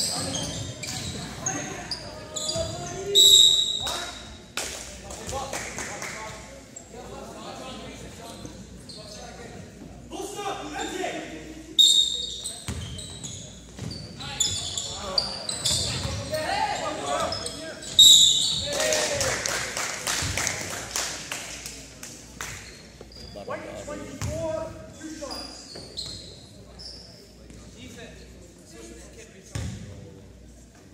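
Basketball game noise in an echoing gym: sneakers squeaking on the hardwood court, the ball bouncing and players calling out. There are louder spikes of squeaks and shouts about 3, 12 and 18 seconds in.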